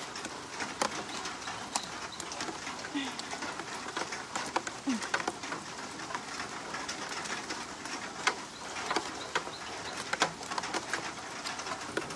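Light rain hissing steadily with many scattered sharp ticks of drops, and a bird calling faintly a few times.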